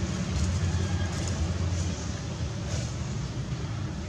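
Steady low rumble of outdoor background noise, with a few faint, brief crackles over it.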